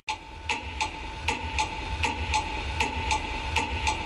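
Ticking-clock effect opening a song: evenly spaced ticks, just under three a second, over a faint steady tone, with no other instruments yet.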